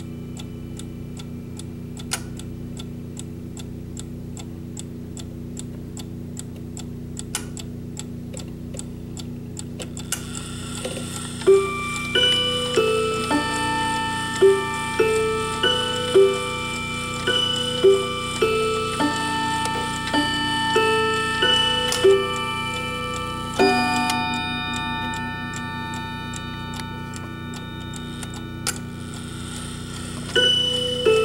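A triple-chime clock ticking steadily for about ten seconds, then its chime playing a melody of ringing notes, a deeper strike near the end ringing out and another chime run starting at the close. The owner finds the chime out of step with the hands.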